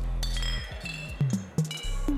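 Electroacoustic fixed-media music: a low sustained bass tone that cuts off near the end, under short percussive hits that drop in pitch, with short high ringing pings like clinking glass.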